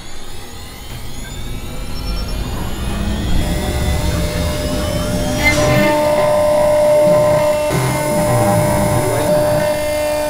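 CNC router spindle spinning up, its whine rising in pitch over the first few seconds, then running steadily as the bit mills a logo into a thin metal gobo disc. Background music plays over it.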